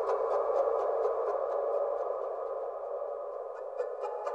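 Sikus (Andean panpipes) sustaining a dense, breathy cluster of held tones. A quick, even ticking, about six clicks a second, fades out early and comes back near the end.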